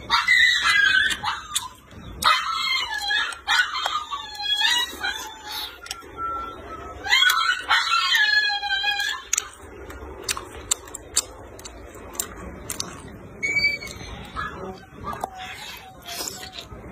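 A tied-up dog crying out in a run of high, wavering whines and howls over the first ten seconds, with a short cry again near the end.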